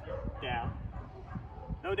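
German Shepherd giving one short, high-pitched whine about half a second in.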